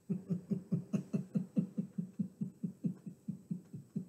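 A man laughing: a long, even run of chuckles, about five a second.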